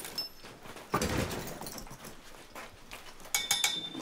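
A dull knock about a second in, then a quick run of metallic clinks near the end.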